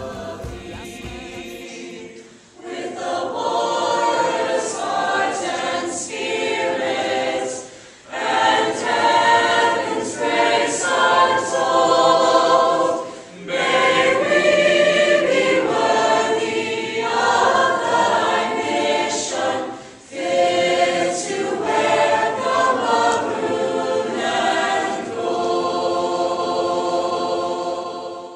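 A choir singing in long phrases, with brief breaths between them about every five or six seconds. The singing starts about two seconds in, after the earlier music cuts off.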